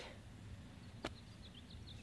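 Quiet outdoor ambience with a faint low rumble, a single sharp click about a second in, and a few faint, short, high bird chirps after it.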